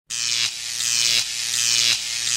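A steady electric buzz in short segments, restarting every half to three-quarters of a second.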